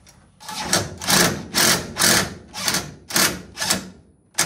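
Cordless drill/driver running in short trigger bursts, about two a second, driving a fastener into the wooden floor panel of the trunk.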